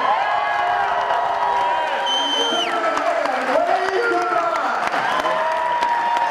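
Audience cheering and applauding in a hall: many voices calling and shouting at once over clapping. About two seconds in, one high-pitched cry is held for about half a second and then falls away.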